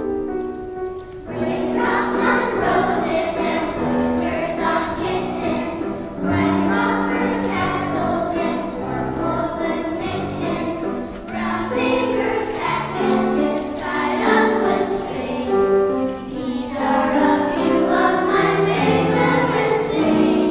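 Young children's choir singing with piano accompaniment. The piano plays alone briefly, then the voices come in about a second in and sing on in phrases.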